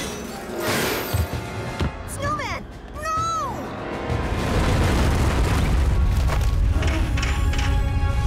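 Cartoon soundtrack: music, a voice crying out twice in rising-and-falling wails a few seconds in, then from about halfway a loud, steady low rumble of a cartoon avalanche.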